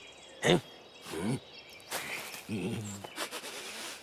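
A few short, quiet grunts and vocal noises from a large cartoon troll-like creature, spaced apart, with brief soft effect noises between them.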